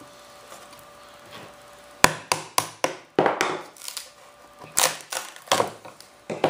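Sharp knocks on the wooden walls of a mold box, starting about two seconds in: a quick run of about six, then a few more spaced out.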